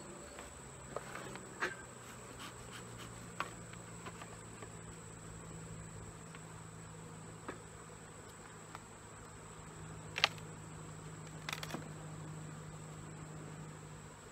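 Honeybees humming steadily around an opened hive, with scattered light clicks and knocks as the wooden hive boxes and frames are handled, the sharpest about ten seconds in. A thin, steady, high insect trill runs underneath.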